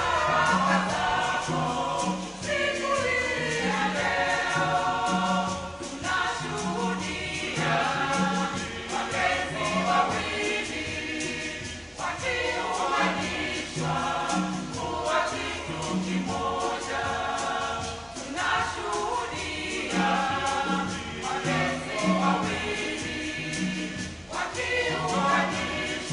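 Mixed church choir singing a wedding song in parts, several voices moving together, with a steady repeating low note pulsing beneath the voices.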